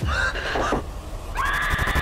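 Two loud, shrill screeching cries over a deep low rumble: the first starts suddenly and wavers in pitch, the second comes in about a second and a half in and holds steadier.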